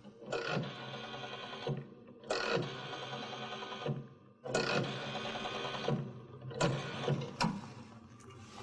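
Payphone rotary dial being dialed: each digit is pulled round and the dial whirs back to rest, about four digits in a row with short pauses between them.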